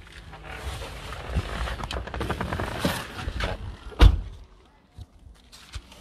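A car door being opened from inside, with rustling and handling, then one loud thunk about four seconds in, followed by a couple of faint clicks.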